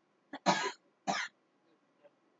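A person coughing twice in quick succession, the two coughs about half a second apart.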